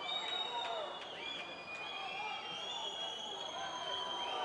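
Arena crowd murmur with long, steady whistles from the stands held over it, several overlapping, one sliding a little in pitch.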